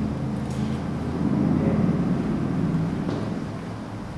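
Steady low hum with several held tones, swelling a little about a second in and easing off near the end.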